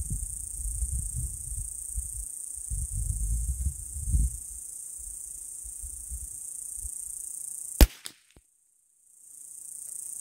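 A single .22 rimfire rifle shot about eight seconds in, a sharp crack after which the recording briefly cuts out. A steady high-pitched insect buzz runs underneath, with a low rumbling noise during the first few seconds.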